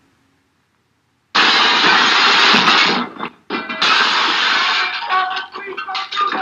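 1930s film soundtrack: silence, then about a second in a loud burst of noise. After a short break at about three seconds, loud music comes in with clearer pitched notes near the end.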